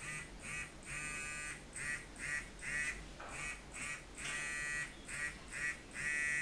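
Handheld galvanic facial massager (vanav Time Machine) running against the skin of the neck, giving a pulsing electronic buzz: short buzzes in a repeating pattern broken by longer buzzes of about half a second.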